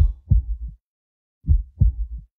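Heartbeat sound effect: two low double thumps, lub-dub, about a second and a half apart.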